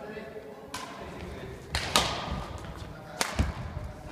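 Badminton rackets striking a shuttlecock during a rally on an indoor wooden court: several sharp hits, the loudest about two seconds in and just past three seconds in.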